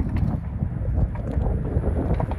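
Wind buffeting the microphone: a dense, fluctuating low noise.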